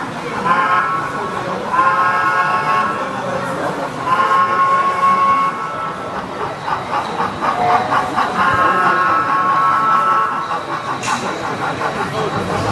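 A model steam locomotive's sound-system whistle, blowing about five long steady blasts of one to two seconds each, with a quicker pulsing stretch in the middle.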